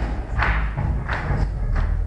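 Loud live music with a heavy, booming low end and sharp rhythmic percussive hits about every two-thirds of a second, echoing in a large hall.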